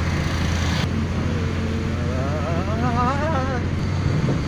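Car cabin noise while driving on a rain-soaked road: a steady low drone of engine and tyres on wet tarmac. A hiss stops abruptly about a second in, and a brief wavering voice-like tone sounds in the second half.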